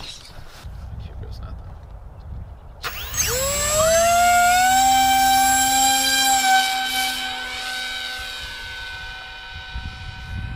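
Electric motor and propeller of an FPV flying wing spooling up about three seconds in: a whine that rises in pitch, then holds steady. It is loudest for a few seconds, then fades as the hand-launched wing flies off. A low rumble comes before it.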